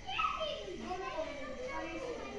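Voices talking in the background, children's voices among them, with no clear words.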